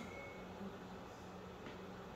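Quiet room tone: a faint steady hiss with a low hum underneath.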